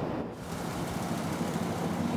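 An engine running steadily under outdoor background hiss, coming in after a brief dip in level just after the start.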